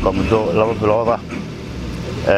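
A person speaking over a steady low engine hum.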